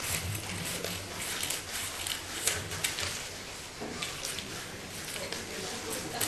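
Scissors cutting lengthwise along a paper Möbius strip: irregular crisp snips and paper rustles.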